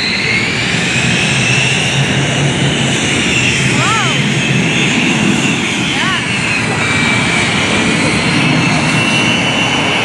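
Stearman biplane's radial engine and propeller droning overhead, its pitch drifting slowly up and down as the plane manoeuvres.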